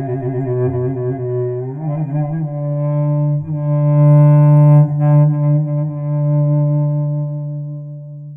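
A solo low-pitched bowed string instrument improvising a taksim in makam Rast. A quick, wavering ornamented figure gives way about two seconds in to long held notes, the closing phrase of the piece, fading near the end.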